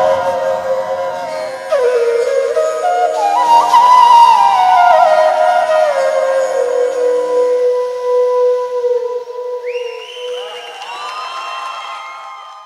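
Bamboo bansuri flute playing a slow closing melody: stepwise descending phrases that settle on a long held low note, then fade out near the end as other sustained tones come in.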